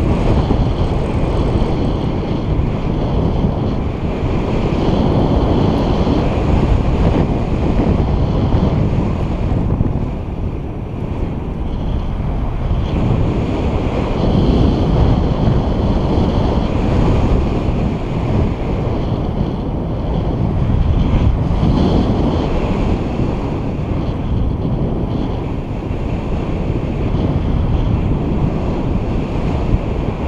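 Wind rushing over the microphone of a camera carried by a paraglider in flight: a loud, steady, low rushing noise that swells and eases every few seconds with the gusts of airflow.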